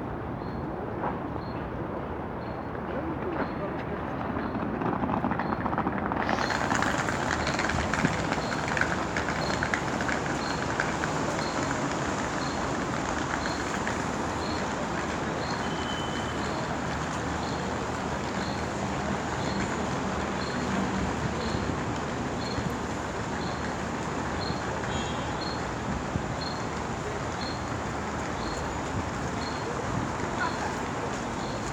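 Steady city street noise: road traffic and the voices of people on the pavement.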